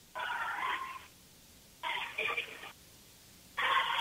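Indistinct voices over a phone-quality broadcast line, heard in three short bursts about a second long each with near-silent gaps between them.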